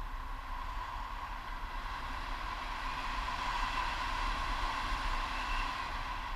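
Wind rushing over an action camera's microphone in paraglider flight, a steady noisy rush with a low rumble that swells about halfway through and eases near the end.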